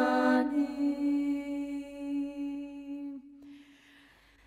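Georgian a cappella vocal ensemble singing a Christmas chant: the voices hold a closing chord that thins and fades away about three seconds in.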